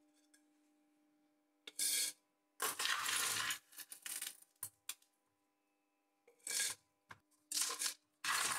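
Small copper granules and scraps clinking as they are dropped by hand into a crucible and scooped from a steel bowl, in about six short bursts.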